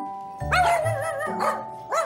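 Small curly-coated poodle-type dogs barking excitedly in greeting. There is one long wavering cry about half a second in and a sharp bark near the end, over light mallet-percussion music.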